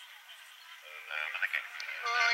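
Speech only: a commentator's voice starts about a second in after a quieter first second. It sounds thin, with no bass at all.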